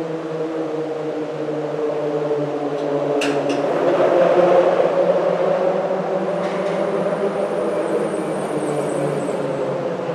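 Car tires humming on the open steel grid deck of the Moody Street Bridge, heard from beneath. The hum swells to its loudest about halfway through as traffic passes, then holds steady. Two sharp clicks come about three seconds in, and a faint high whine runs through the second half.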